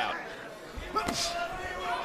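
Two dull thuds of boxing punches landing, about three-quarters of a second and a second in, followed by a short sharp hiss, over faint arena voices.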